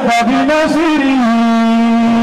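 A man chanting in Arabic. His voice moves up and down through the first second, then holds one long steady note through the second half.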